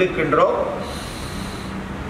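A man breathing through one nostril, the other held shut with his thumb, in alternate-nostril breathing: a soft airy hiss of about a second, starting about a second in.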